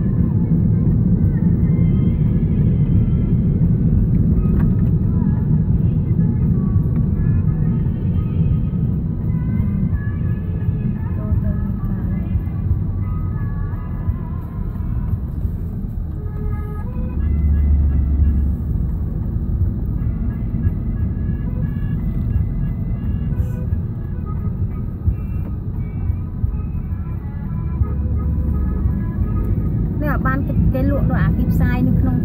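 Inside a moving car: a steady low rumble of engine and road noise, with music that has a voice in it playing on the car's audio, heard muffled under the rumble.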